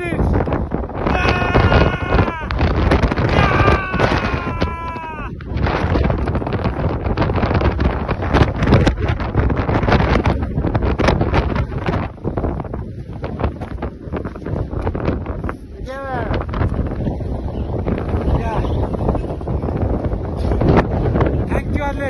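Strong wind buffeting a phone's microphone, a loud rough rumble throughout. People's voices call out over it in the first few seconds, and briefly again later.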